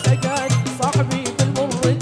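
Jazani folk music for a line dance: quick, steady drumming with deep drum beats several times a second under a wavering, ornamented melody.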